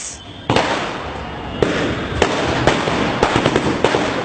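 Firecrackers going off: a rushing hiss starts about half a second in, with irregular sharp cracks over it that come thicker near the end.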